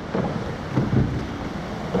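Wind buffeting the microphone over sea water rushing and splashing along the hull of a rowed surf boat.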